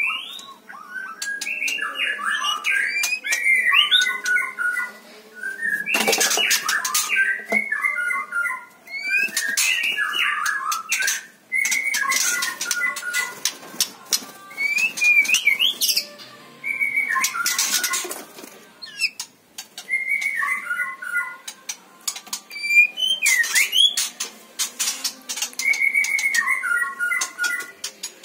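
A caged white-rumped shama singing: phrases of clear whistled notes with quick rising sweeps, repeated every couple of seconds with short pauses between them. Sharp clicks and rattles come in among the phrases.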